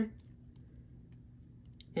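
A few faint, light clicks of a small plastic toy bike being handled, its front wheel and handlebars turned by hand.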